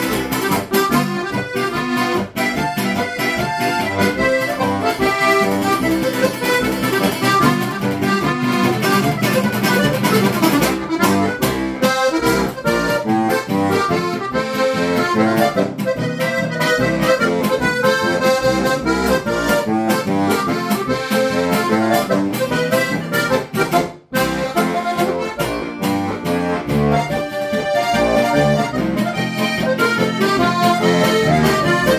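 Lanzinger diatonic button accordion (Steirische Harmonika) played solo: a continuous tune with melody over bass notes. There is a short break in the playing about 24 seconds in.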